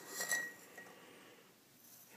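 A metal teaspoon clinking against a ceramic coffee mug as sugar is spooned in: a couple of light clinks with a short ring in the first half second.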